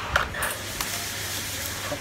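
Plastic handling noise: a few light clicks and a scratchy rubbing as a round plastic mini-fan housing is moved and fitted by hand.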